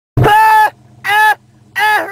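A voice calling out three times in long, held notes on one steady pitch, each about half a second, over a low steady hum.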